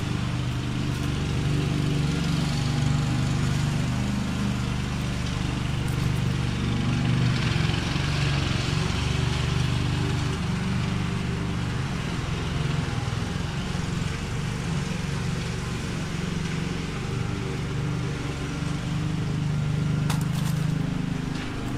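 Lawn mower engine running steadily in the background, a low hum whose pitch wavers slightly.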